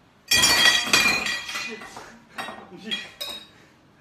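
Tableware being struck and clinking with a ringing tone: one loud strike a moment in, then several fainter ones that die away.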